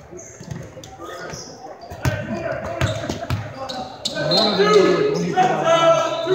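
A volleyball strikes the hardwood gym floor a few times in sharp impacts, among players' shouts and calls echoing in the gym; the voices grow louder in the second half.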